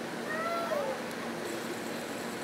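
A baby's short high-pitched vocal sound near the start, rising and then falling in pitch and lasting under a second.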